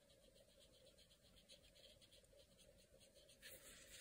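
Near silence, with faint soft scratching of a paintbrush stroking paper.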